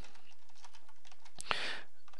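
Typing on a computer keyboard: a run of quick key clicks as a shell command is entered. A short breath is heard about three quarters of the way through.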